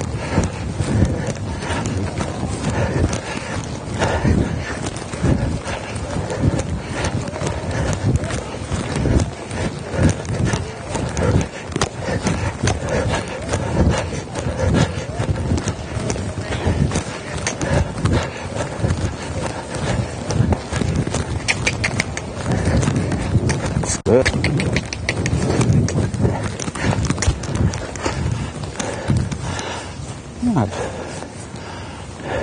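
Hoofbeats of a young black mare trotting on soft sand arena footing: a running series of muffled thuds.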